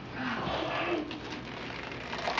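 Gift wrap rustling as children unwrap a present, with a soft, low, cooing 'ooh' from a voice in the first second.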